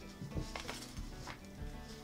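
Quiet background music, with a few faint clicks and rustles of metal knitting needles being slid into a fabric pocket.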